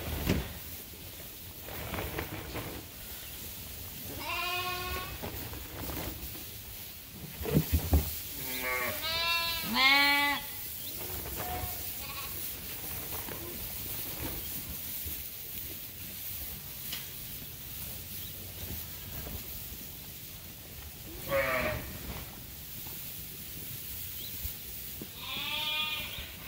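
Sheep bleating: one quavering bleat about four seconds in, two or three overlapping bleats a few seconds later, and two more toward the end.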